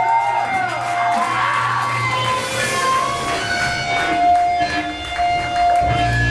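Electric guitar held and ringing on a sustained tone, with notes bending up and down in pitch above it, over a crowd cheering at a hardcore punk show.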